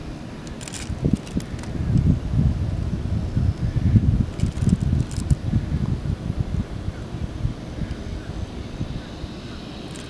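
Wind buffeting the microphone: an uneven low rumble that swells about a second in and eases off near the end, with a few faint clicks.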